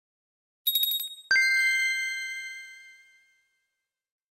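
Chime sound effect for a title card: a brief high shimmering tinkle, then about a second in a single bright bell-like ding that rings and fades away over about two seconds.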